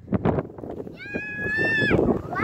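A high, held voice-like call lasting about a second, rising slightly before it stops, after a few short taps.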